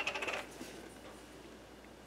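A few light clinks of kitchen utensils in the first half second, then quiet room tone.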